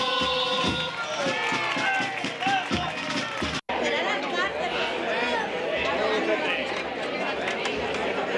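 Men's group singing from a carnival murga: held notes gliding over regular low drum beats, cut off suddenly a little past three seconds in. After that comes the chatter of a crowd of people talking at once.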